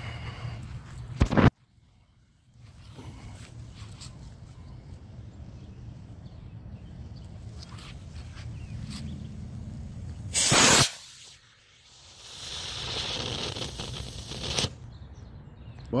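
An Estes B6-4 black-powder model rocket motor firing: a short, loud rushing burst about ten seconds in as it launches, followed by a few seconds of hissing. A brief loud burst also comes about a second in.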